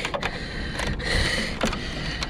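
Small irregular clicks and rattles of wires and a spade connector being handled and pulled inside the metal housing of a Dometic rooftop RV air conditioner, as the start capacitor's wires are disconnected.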